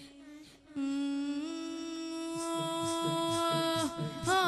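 A young male reciter's voice, unaccompanied, holds one long, steady note without words in an Iraqi Shia elegy chant, starting after a brief pause. About halfway through, a soft low beat comes in beneath it, about three beats a second.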